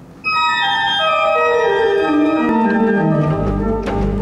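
Church organ starting the introduction to a soprano song. It enters suddenly just after the start with a descending run of held notes that pile up into a sustained chord. Deep bass notes come in near the end.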